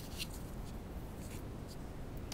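Fingers handling crinkle ribbon and pressing it onto a card disc: a few faint, short rustles and scratches over a steady low background noise.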